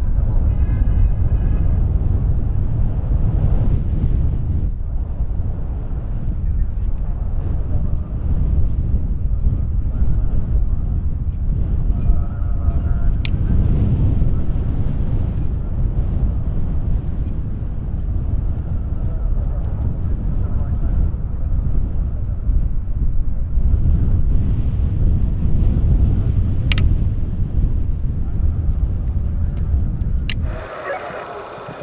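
Wind buffeting the microphone outdoors, a loud steady low rumble, with faint distant voices now and then and two brief clicks.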